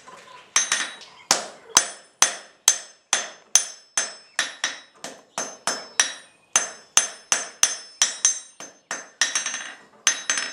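Blacksmith's hand hammer striking red-hot iron on an anvil in a steady run of blows, about two to three a second, starting about half a second in. Each blow gives a short metallic ring.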